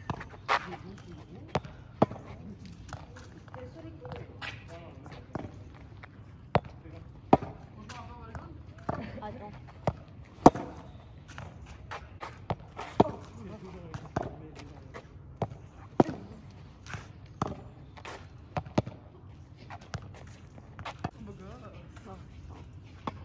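Tennis ball being struck with a racket and bouncing on an asphalt road: a run of sharp pops at irregular intervals, roughly one every half second to second and a half.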